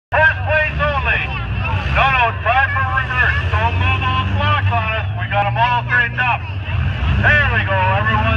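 Steady low rumble of idling engines under a voice that talks loudly throughout.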